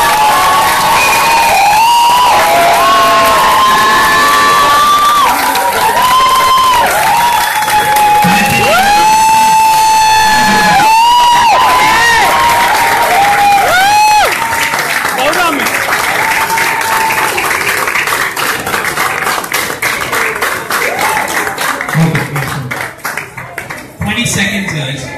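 A song with a gliding, sung melody plays while an audience claps and cheers. About fourteen seconds in the melody fades, and applause with crowd cheering carries on to the end.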